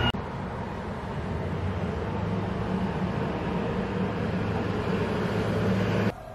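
Steady low mechanical hum over a wash of noise, growing slightly louder toward the end.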